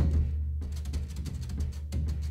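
Instrumental jazz-trio music with a deep sustained bass under drum strikes, one at the start and another near the end, and quick light ticking in between.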